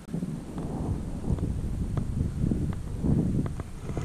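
Wind buffeting the microphone, a low uneven rumble, with a few faint clicks.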